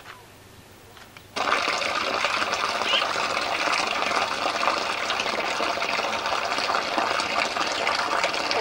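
Water pouring steadily from a metal pipe spout set in a stone wall and splashing below, starting suddenly about a second and a half in.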